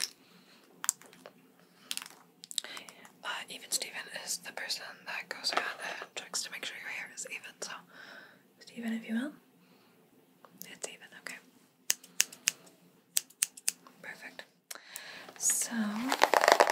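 Close-miked whispering and soft mouth sounds, with scattered sharp clicks and snips from haircutting tools worked right by the microphone as the cut is checked for evenness; the clicks come in a quick run in the last few seconds.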